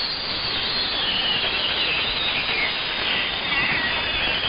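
AM receiver audio on the 11-metre CB band: steady static hiss with faint, wavering heterodyne whistles that drift slightly down in pitch, and no voice on the channel.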